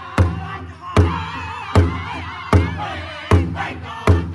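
Powwow drum group striking a large shared drum with drumsticks in a steady beat, about one stroke every three-quarters of a second, with high, wavering singing voices over it through the middle.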